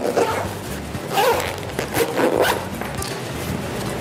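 Zip being pulled closed around a soft padded fabric pouch in several short strokes.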